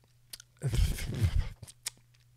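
A puff on a Joyetech eCab pen-style e-cigarette through its very stiff airflow: about a second of breathy drawing and mouth noise, with a few short clicks around it.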